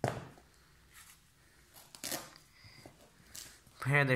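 A velcro-strap sneaker is put down on the floor with a thump, then handled, with a short rip of a velcro strap being pulled open about two seconds in and another faint rasp near the end.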